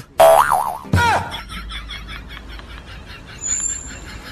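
Cartoon boing sound effect: a springy tone that wobbles up and down in pitch, then a second boing falling in pitch about a second in. Faint rhythmic music follows.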